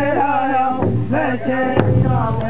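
Powwow drum group: men singing a chant together over a large shared powwow drum struck with padded sticks, with a sharp stroke near the end.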